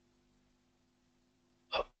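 Near silence with a faint steady hum (room tone), then a man says one short word, 'hǎo' (okay), near the end.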